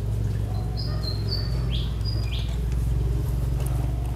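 A few high, thin bird chirps, two of them short falling notes about halfway through, over a steady low hum.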